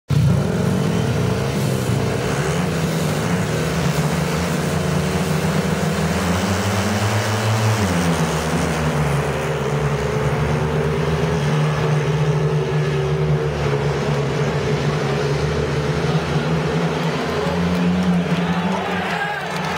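Speedway motorcycles, 500 cc single-cylinder methanol engines, racing as a pack at high revs with a steady loud engine note. The pitch drops for a moment about eight seconds in, then holds steady again.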